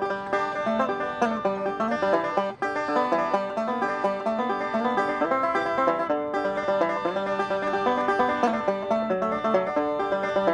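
Five-string banjo played solo, a fast, continuous stream of picked notes, with a brief dip in loudness about two and a half seconds in.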